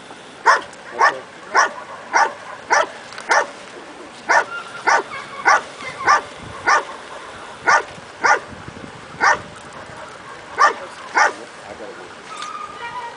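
A dog barking repeatedly at a decoy in a bite suit, about two barks a second with a few short pauses, some sixteen barks in all. It is guarding the decoy in a protection-sport exercise, barking rather than biting.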